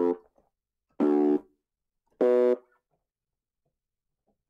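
Three short, evenly spaced notes of a synthesized slap-bass patch from FL Studio's Flex synth, distorted through a waveshaper and gated, each note stopping sharply.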